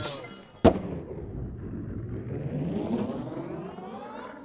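A skateboard lands with one sharp clack, followed by its wheels rolling on asphalt in a steady rumble that swells around three seconds in and then eases off.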